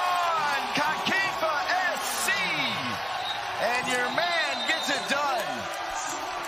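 Several excited voices shouting and whooping over each other in celebration of a game-winning goal, with short rising and falling yells over a background crowd.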